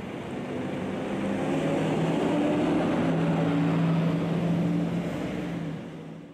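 Engine of a truck-mounted crane running steadily under load while it hoists a wrecked car, with a faint rising whine. The sound fades out near the end.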